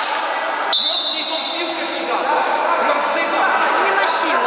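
Echoing hall noise at a youth futsal match: many voices calling and shouting, with the ball thudding on the hard court floor. About a second in, a high steady tone starts and fades out over about two seconds.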